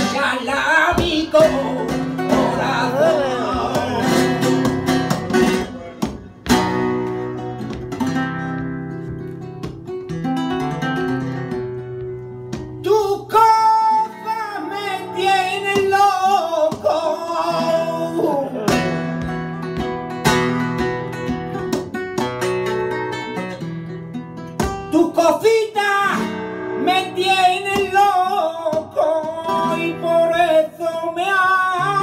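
Male flamenco singer singing bulerías por soleá in long, wavering, ornamented lines to flamenco guitar accompaniment of strums and plucked notes. The voice pauses for several seconds at a time while the guitar plays on.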